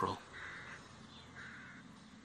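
A bird calling faintly twice, two short harsh calls about a second apart, over quiet room tone.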